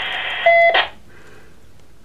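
Two-way radio: the hiss of a transmission ends in a short electronic beep about half a second in, which cuts off sharply and leaves only faint background hiss.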